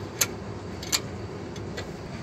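Sharp metallic clicks, two about three-quarters of a second apart and a fainter one near the end, as a flat screwdriver levers the adjuster of a drum brake to set the shoe clearance.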